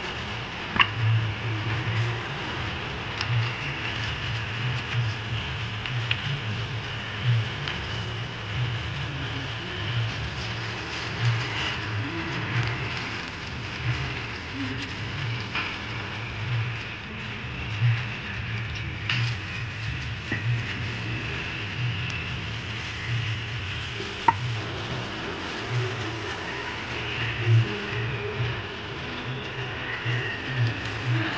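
Steel utensils being washed by hand: a brush scrubbing metal and water running from a hose, with a couple of sharp metal clinks. A low pulsing throb runs underneath.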